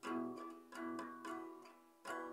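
Acoustic guitar playing three plucked notes, about two thirds of a second apart, each ringing and then fading.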